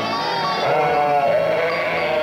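Sheep bleating, with wavering calls from about halfway in, over background music.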